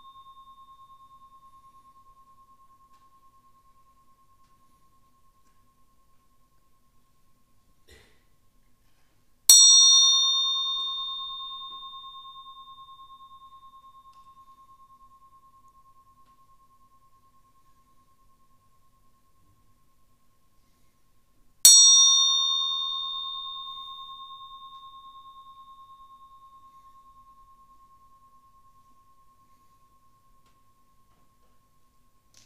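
A small meditation bell struck twice, about twelve seconds apart. Each stroke rings a clear high tone that fades slowly over several seconds, and the last of an earlier stroke dies away at the start. It is sounded as the object of a listening meditation.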